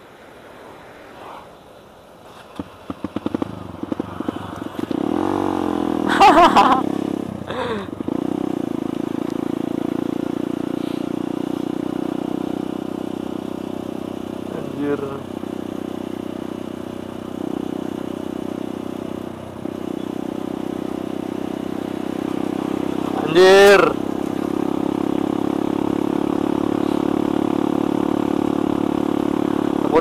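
Kawasaki D-Tracker 150's single-cylinder four-stroke engine under way. It is quieter for the first couple of seconds, picks up with a run of uneven pulses about two to five seconds in, then runs steadily while riding.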